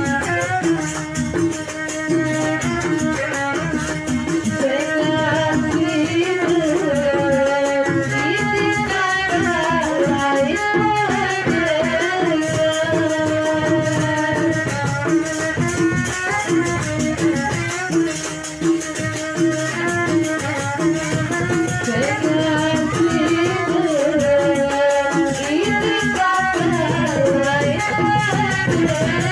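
Live Lombok rudat music: a woman sings a wavering, long-held melody through a microphone and PA over hand drums and steady rattling percussion.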